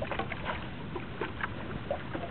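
Water lapping and splashing against a stand-up paddleboard, with a few small splashes and drips and a low rumble of wind on the microphone.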